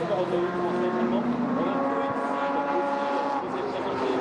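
A car engine running at fairly steady revs, its pitch shifting briefly up and down a few times.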